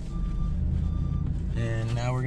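Reversing beeper sounding short, evenly spaced high beeps a little under once a second over the low running of the truck's engine, heard from inside the cab: the truck is backing up.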